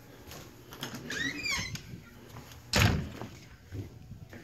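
A house door being opened, with footsteps: a short gliding squeak a little over a second in, then a loud knock or thud near three seconds.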